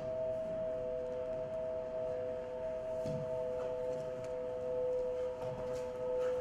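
Musical drone of two or three steady held tones, like a singing bowl or synthesizer pad, sounding without a break, with a few faint soft knocks over it.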